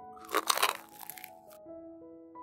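A brief crunch of crisp fried dough being torn open, lasting about a second, over soft piano background music.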